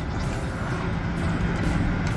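Steady low drone of heavy demolition machinery's diesel engines running, over an even wash of outdoor noise.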